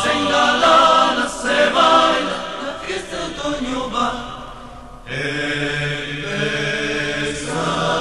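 Rondalla music: plucked guitar notes ring out and decay for the first few seconds. Then, about five seconds in, a choir of voices holds a sustained chord that shifts to a new chord near the end.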